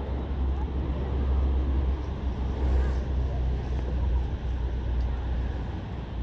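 Outdoor city ambience dominated by a steady low rumble, with a faint hiss of background noise.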